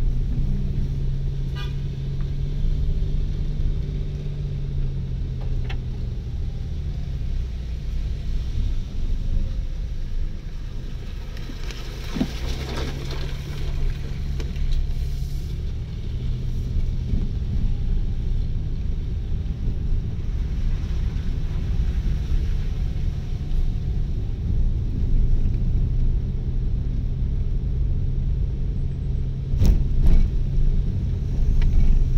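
Car engine running steadily while driving, with the low rumble of tyres on an unpaved dirt road heard from inside the cabin; a brief louder burst of road noise comes about twelve seconds in.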